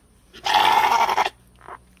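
A Dorper ram gives one rough, raspy bleat lasting just under a second.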